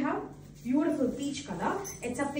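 A woman's voice in three short bursts of speech or exclamation, with brief gaps between them.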